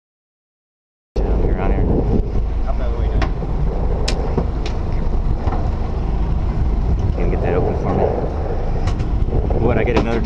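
Silence for about the first second, then the steady low rumble of a sportfishing boat's engine mixed with wind on the microphone, with faint voices and a few light clicks.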